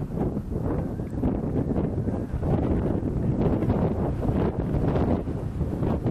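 Wind buffeting the microphone in an open field, an uneven rumbling rush that rises and falls.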